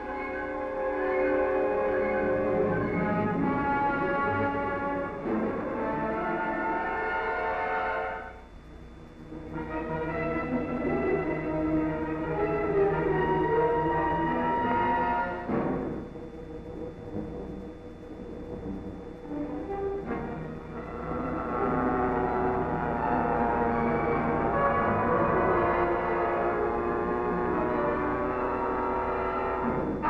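Orchestral film score with a narrow, dull old soundtrack sound. It thins out briefly about eight seconds in and goes quieter for a few seconds past the middle before swelling again.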